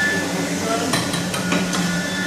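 Steady hum of soy-milk processing machinery, with a quick run of sharp metallic knocks and clinks about a second in.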